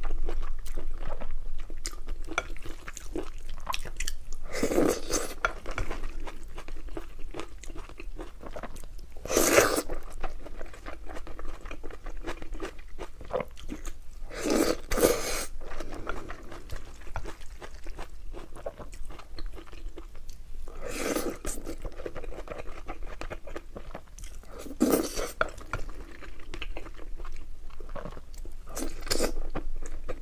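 Close-miked chewing and wet mouth sounds of a person eating a soupy rice and noodle stew from a wooden spoon. Louder bursts come every five seconds or so as each new spoonful goes in.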